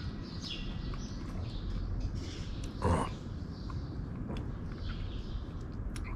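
Outdoor background ambience: a steady low hum with faint bird chirps, and one short louder sound about halfway through, while a man chews a mouthful of food.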